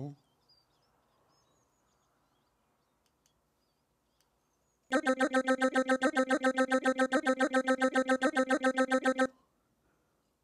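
PPG Phonem vocal synthesizer playing a tempo-synced chain of sung syllables on one held note: a fast, even stutter of about ten syllables a second that starts about five seconds in and stops abruptly about four seconds later. The voice is panned across the stereo field by a one-bar synced LFO.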